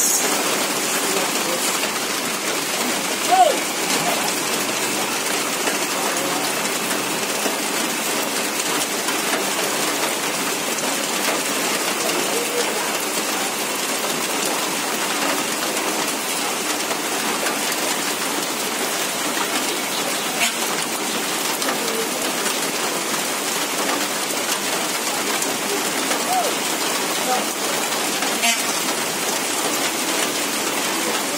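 Heavy rain falling steadily on a road, an even hiss throughout, with a brief louder sound about three seconds in.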